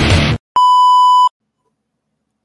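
Loud rock music cuts off suddenly, and a moment later a single steady electronic beep sounds for under a second, then stops cleanly.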